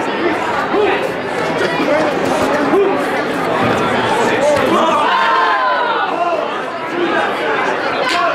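Crowd of spectators around a karate ring: many voices talking and calling out at once in a large hall, none standing out clearly.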